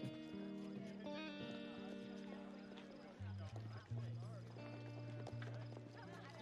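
Soft music played faintly, a series of long held notes that change pitch every second or so.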